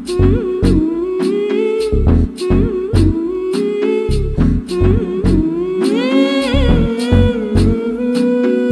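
Hindi film song intro: a singer hums the melody, 'hmm hmm hmm', over a steady drum beat. The hummed line rises and is held longer about six seconds in.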